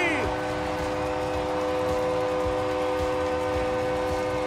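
Arena goal horn sounding a steady train-horn chord of several notes, held unbroken throughout after a Reign goal.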